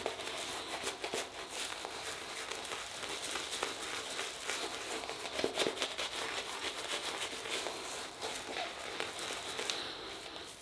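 Badger and boar shaving brush working shaving-cream lather against stubble on the face, a continuous crackly, bristly scratching made of many small clicks.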